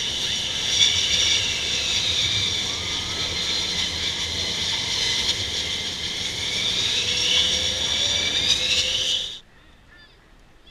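USAF Thunderbirds F-16 fighter jets taxiing, their jet engines giving a loud, steady high-pitched whine of several tones over a low rumble. It cuts off suddenly near the end.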